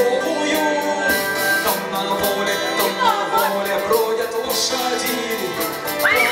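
A rock band playing live, with electric and acoustic guitars, bass and drums, in an instrumental stretch before the vocal comes back in.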